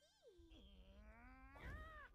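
Cartoon character's wordless drawn-out vocal, like a whiny meow: it starts low, sinks a little, then rises to a higher whine just before the end.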